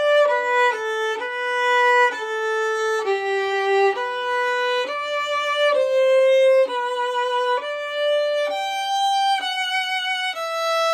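Solo violin playing a slow passage of single bowed notes, each held about half a second to a second, stepping smoothly from one pitch to the next.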